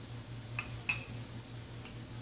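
Glassware clinking: two short, ringing clinks a little over half a second and about a second in, the second the louder, then a faint tick near the end, as bottles and ice-filled glasses are handled.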